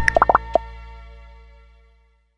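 Closing jingle of a Sendwave app advert: a few quick rising notes, then a held chord that fades away over about a second and a half.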